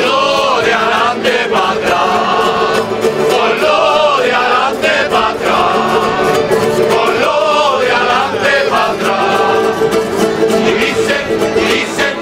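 A Canarian folk group of men singing together in chorus, accompanied by strummed timples and a guitar.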